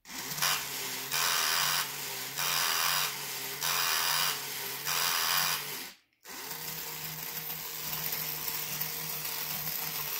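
A vintage battery-operated walking bulldog toy whirs as its small electric motor drives the gears. For the first six seconds the whir swells into louder rasping surges about once a second. Just before six seconds in it stops for a moment, then starts again and runs evenly.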